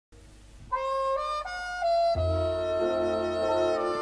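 Instrumental music: a single melody line of a few held notes starts just under a second in, and a low bass and sustained chord join it about two seconds in.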